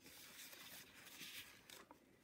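Faint rustle of a picture-book page being turned by hand, with a light tap near the end.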